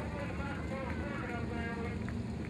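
Indistinct voices over the steady low rumble of a dirt late model race car's engine idling.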